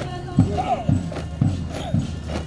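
Boots of a marching column striking asphalt in step, about two heavy footfalls a second, over music and voices.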